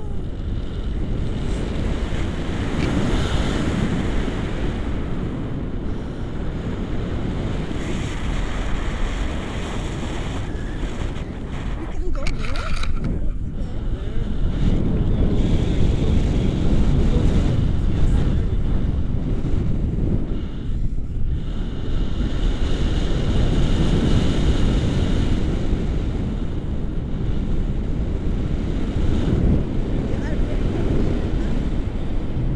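Wind buffeting the camera microphone during tandem paraglider flight: a steady low rumble of rushing air that eases briefly about twelve seconds in.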